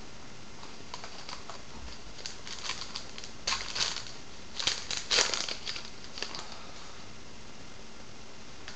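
Trading-card pack wrapper crinkling and tearing as the pack is opened and the cards are pulled out, in a run of short crinkly bursts that are loudest in the middle.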